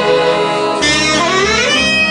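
Saxophone playing a solo line with a live jazz big band, sliding smoothly upward in pitch a little under a second in.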